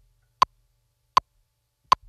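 Metronome clicking a count-in at 80 beats per minute: three short, sharp clicks evenly spaced about three-quarters of a second apart.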